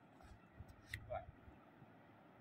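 Near silence: a faint low rumble, with one short sharp click about a second in.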